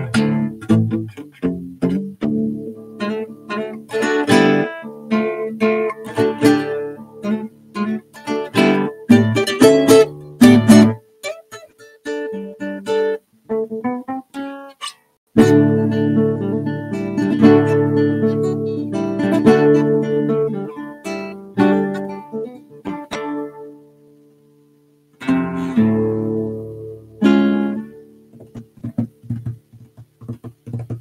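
Solo classical guitar, its nylon strings fingerpicked in a lively passage of melody over bass notes. The playing thins to a softer stretch in the middle, stops for about a second about three quarters of the way through, then resumes.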